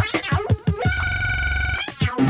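Live drum and bass from a Korg Electribe 2 Sampler and a Korg Volca Bass: a fast chopped breakbeat breaks off about halfway for a held bright synth tone over a deep bass note, and the drums come back right at the end.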